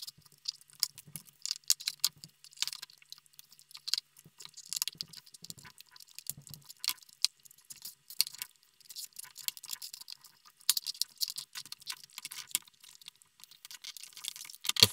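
Plastic front bezel of an iBook G3 clamshell display being pried off by hand with plastic tools: irregular clicking and crackling of the plastic flexing and its clips giving way.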